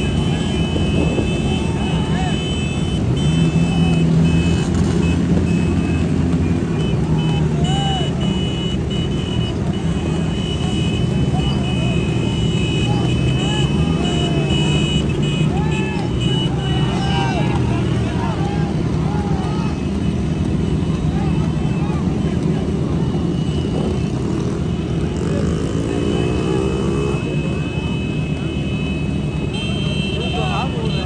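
Many motorcycle engines running together close by, with some revving, and voices shouting over them. A high steady tone sounds on and off.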